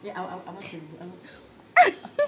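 A baby's short, sharp vocal burst with falling pitch, like a hiccup, near the end, after soft voices at the start.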